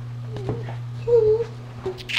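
A toddler making two short, high-pitched little voice sounds, a brief one about half a second in and a longer wavering one near the middle, over a steady low hum.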